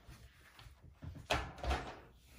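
A die-cutting machine being lifted and set down on a table, giving two dull knocks a little over a second in.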